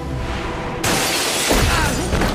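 A window pane shattering, a film sound effect: a sudden crash of breaking glass about a second in, followed by a heavy thud and scattering shards, over orchestral film music.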